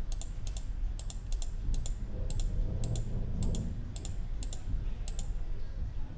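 Computer mouse button clicking repeatedly, about two sharp clicks a second, many heard as a quick press-and-release pair, over a steady low hum.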